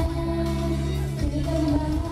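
A woman singing a pop ballad live into a handheld microphone over band accompaniment, holding one long note for about the first second before moving to the next.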